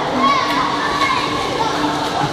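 A group of children's voices chattering and calling out together, over the steady background hubbub of an indoor swimming pool hall.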